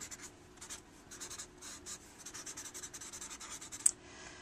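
Paper blending stump rubbing graphite into sketchbook paper in quick short strokes, a soft scratchy rubbing, with a single sharp click near the end.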